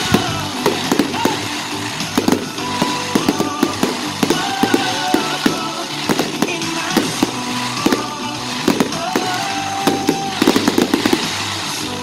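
Rapid volley of aerial firework shells bursting, several sharp bangs a second with crackle, growing denser near the end. Music plays underneath.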